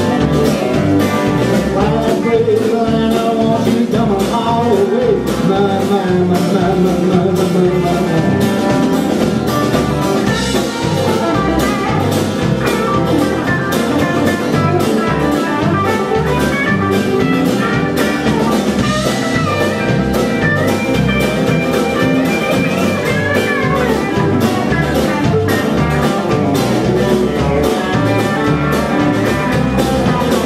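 Live band playing a country-blues song: electric lead guitar over strummed acoustic guitar, electric bass and a drum kit keeping a steady beat.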